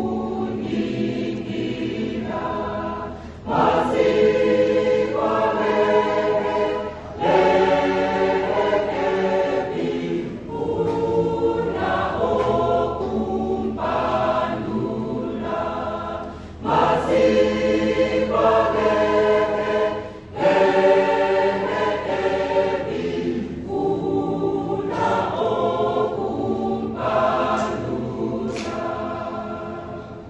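Mixed choir of men's and women's voices singing in harmony, in phrases with short breaks between them. The singing grows quieter near the end.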